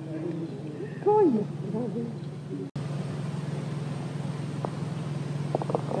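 A steady low hum like a distant engine, with a short falling voice sound about a second in and a few faint clicks near the end.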